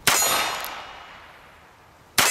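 A .22 rimfire revolver shot and a steel target ringing as the bullet strikes it: one sharp crack at the start, then a metallic ring that fades away over about a second and a half.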